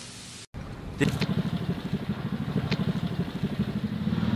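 After a brief dropout, a motor vehicle engine runs steadily from about a second in, a low pulsing rumble with a couple of faint clicks over it.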